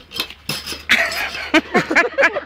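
Metal pogo stick clicking and clinking in quick strikes as it bounces, then short cries of voices as the rider goes down on the grass near the end.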